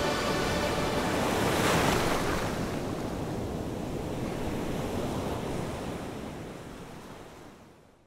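Sea surf washing onto a sandy beach, with a wave breaking loudest about two seconds in. The sound then gradually fades out.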